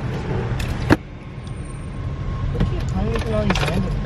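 Steady low rumble of a car's engine and road noise heard inside the cabin, with one sharp click about a second in and faint talking in the second half.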